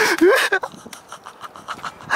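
A man gasping and panting hard as he hauls himself out of river water: a loud strained gasp with a short bending cry at the start, then quicker, fainter breaths.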